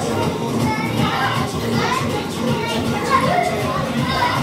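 A group of children laughing, chattering and calling out excitedly together over a film song playing from a TV.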